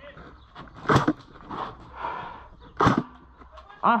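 ICS CXP-APE electric airsoft rifle firing two single shots, sharp short cracks about two seconds apart.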